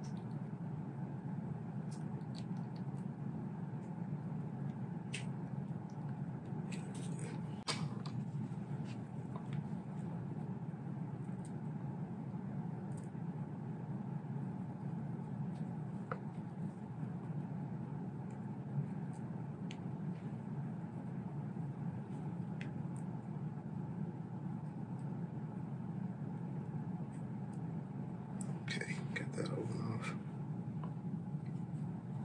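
Faint clicks and scrapes of a hobby knife and fingers working an old rubber O-ring off a rifle barrel, over a steady low room hum. A few clicks come early, more about seven seconds in and just before the end.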